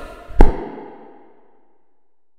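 A single loud, deep percussive hit about half a second in, ringing out and fading over the next second or so. It is the closing stroke that ends the track.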